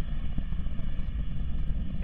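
Deep, steady, distant rumble of the Antares rocket's two AJ26 first-stage engines firing at full thrust as the rocket climbs away, its level rapidly wavering.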